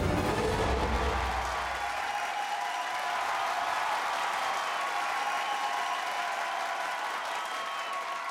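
Large audience applauding and cheering. Music with a heavy bass plays under the applause for about the first two seconds, then stops, leaving the applause with a few faint held tones.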